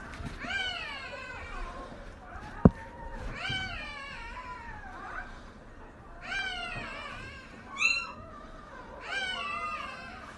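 Newborn Belgian Malinois puppies crying in the whelping box: about five drawn-out, high-pitched cries that rise and fall in pitch. One sharp click a little under three seconds in.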